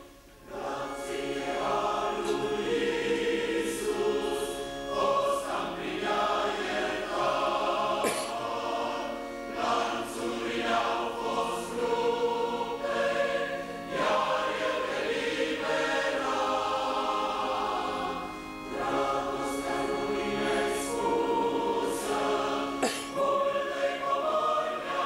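Mixed choir of men's and women's voices singing a church hymn in long held chords, phrase after phrase, with a short break just after the start.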